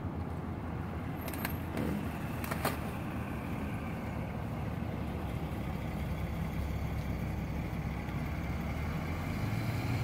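Steady low background rumble, typical of distant road traffic, with two faint clicks in the first three seconds.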